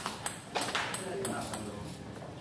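Table tennis balls clicking sharply several times at irregular intervals as they bounce on a table or paddle, with the hall's echo behind them.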